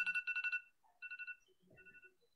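An electronic ringing tone: two high pitches trilling in rapid pulses, heard in three short bursts.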